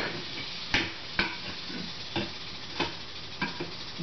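Metal reptile tongs being handled in a plastic tub: about six short, sharp clicks and knocks spread over a few seconds, over a faint steady hiss.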